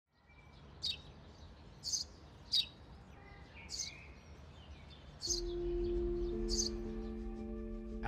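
Small birds chirping, six short high calls spaced through the clip over a soft outdoor background. About five seconds in, a steady held music tone comes in beneath them.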